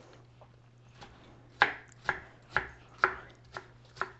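Kitchen knife dicing radishes on a cutting board: a run of sharp knocks about two a second, starting about a second and a half in.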